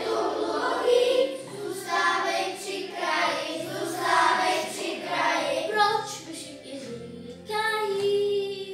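Children singing a song together in Czech over a musical accompaniment, with a short lull near the end before the voices come back in.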